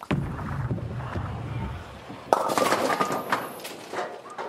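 Bowling ball landing on the wooden lane and rolling with a low rumble for about two seconds, then crashing loudly into the pins with a rattle of pins scattering.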